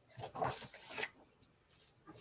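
A picture-book page being turned: a brief, quiet paper rustle in the first second.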